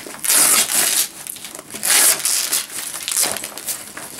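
Velcro hook-and-loop strips being torn apart as a fabric insert is pulled off the inside of a nylon bag: two long rips about a second and a half apart, with fabric rustling between.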